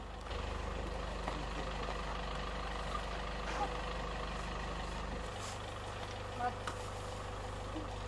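Pickup truck engine idling: a low steady rumble, with faint voices in the background.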